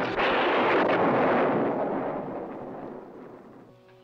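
Thunderclap: a sudden loud crash that rolls and fades away over about three seconds.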